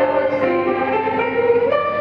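Middle school choir singing held notes with instrumental accompaniment, the pitch shifting a few times.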